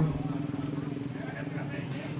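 Street traffic: a vehicle engine running steadily with an even hum, among passing minibus and motorcycle traffic.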